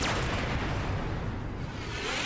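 A sound effect opening a radio segment jingle: a sudden blast that carries on as a steady, dense rush of noise.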